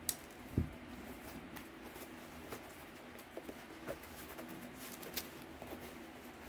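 Faint handling noises of folding knives and a foam-lined hard case: a sharp click right at the start, a soft knock about half a second in, then scattered light clicks.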